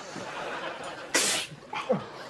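A man sneezes once, a single sharp explosive burst about a second in, after a faint murmur.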